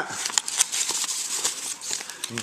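Paper and clear plastic packaging rustling and crinkling in the hands, with irregular small crackles.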